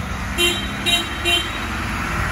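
Box van driving past, its engine and tyres making a steady rumble, with three short horn toots about half a second apart in the first second and a half.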